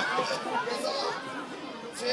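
Spectators' voices: several people talking at once, indistinct chatter among the crowd.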